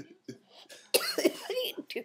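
A woman coughing and laughing, stifled behind her hand: a few short coughs, then a louder burst of coughing laughter about a second in.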